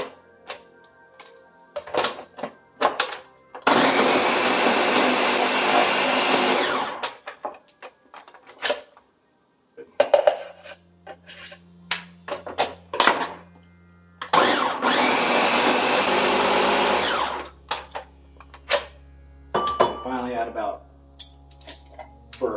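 Ninja countertop blender running in two bursts of about three seconds each, about four seconds in and again near two-thirds of the way through. It is churning a thick mix of frozen strawberries and yogurt. Sharp clicks and knocks from handling the jug and lid come between the bursts.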